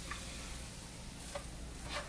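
Fried rice sizzling faintly in a skillet, with a few light scrapes and taps of a spatula stirring it.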